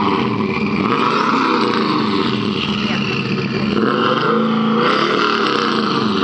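Turbocharged Nissan Titan's 5.6 L V8 running and being revved several times, its pitch rising and falling, heard at the exhaust tip.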